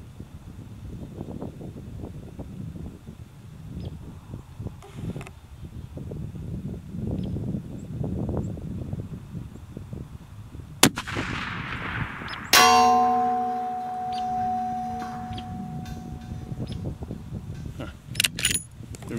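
A single shot from a Savage 110 .338 Lapua Magnum rifle about eleven seconds in, then, about 1.7 s later, the bullet striking the steel target plate at 1004 yards. The plate rings with several clear steady tones that fade over about four seconds.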